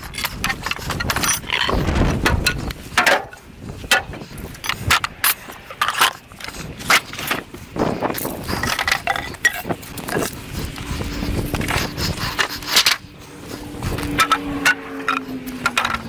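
Wooden pallet being broken apart with hand tools: many sharp knocks of metal on wood and loose boards clattering as they are pulled off and dropped. A faint low hum falls slightly in pitch near the end.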